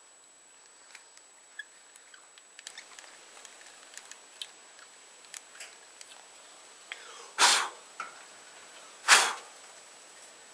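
Light scattered clicks and taps of hand tools and a steel knife part being worked at the bench, then two short, loud noisy bursts about two seconds apart.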